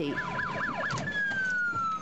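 Police siren in yelp mode, its pitch sweeping rapidly up and down about four times a second, then changing to one long tone that slowly falls in pitch. Under it is a steady din of crowd noise.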